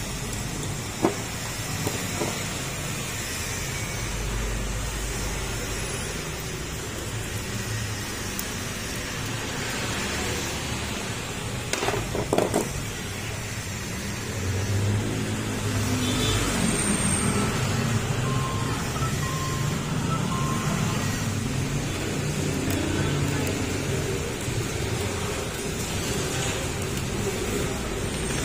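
A few light metallic clicks of a small hand socket with a Torx bit working the throttle position sensor's screw on a Honda Beat FI throttle body, about a second in and twice around twelve seconds, over a steady background noise.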